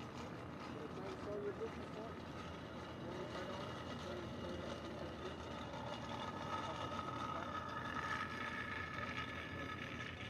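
Airfield background sound: indistinct voices over a steady mechanical hum, with a higher steady whine getting louder in the second half.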